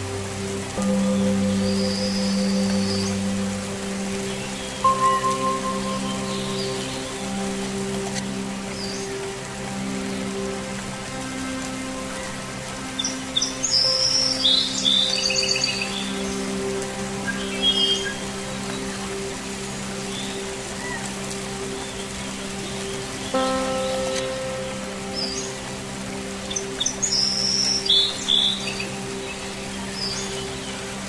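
Ambient relaxation music of sustained low string and toning-bowl tones over steady rain. Bird chirps come in short bursts, a few early on, more about halfway through and again near the end.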